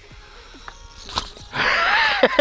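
Small electric motor and propeller of a mini RC warbird plane passing close by. A loud rushing whine swells up about a second and a half in, and its pitch starts to drop as the plane goes past.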